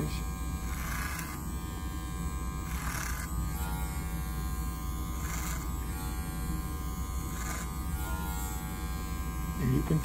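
Cordless electric hair clippers running steadily, used clipper-over-comb on a manikin's sideburn, with a short hiss every two seconds or so as the blade bites into hair on each pass.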